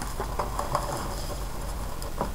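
Soft rustles and small clicks of paper being handled, over a steady low hum.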